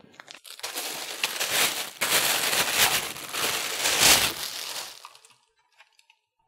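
Clear plastic packaging bag crinkling and rustling as a small satellite speaker is pulled out of it and handled. The rustle starts about half a second in, runs for about four and a half seconds, and fades out near the end.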